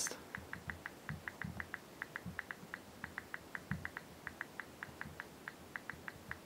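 Fast typing on a smartphone's touchscreen keyboard: a quick run of faint, short, high clicks, about six a second, one for each key tapped, with a few brief pauses, and soft low taps of fingertips on the glass.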